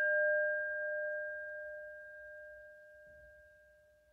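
A struck bell ringing out with one clear low tone and a higher one above it, fading steadily from moderate to faint.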